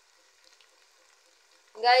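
Chopped onions frying in oil in an aluminium pot, a faint steady sizzle with a few small crackles. A voice cuts in near the end.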